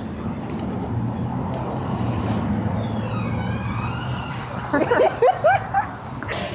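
Steady low rumble of city street traffic. Near the end comes about a second of short, rising vocal whoops.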